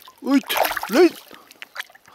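A released pike splashing in the water as it bolts from the hands, with two short vocal exclamations over the splash.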